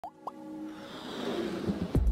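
Electronic intro music for a logo animation: two quick upward-gliding plops right at the start, then a swell that builds steadily louder and ends in a falling sweep into the beat.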